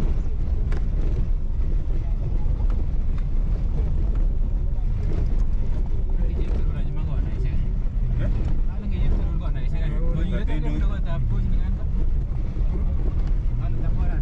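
Car driving slowly on a rough dirt road, heard from inside the cabin: a steady low rumble of engine and tyres on gravel. Indistinct voices come in around the middle.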